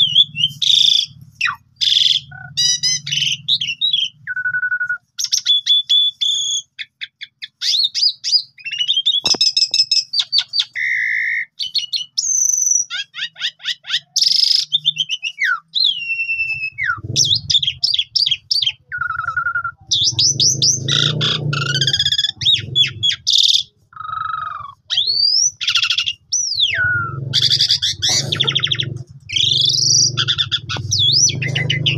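Asian pied starling (jalak suren) in full song: a long, varied run of whistles, rising and falling glides, rapid trills and harsh chattering notes, broken by short pauses. It is packed with mimicked phrases ('full isian').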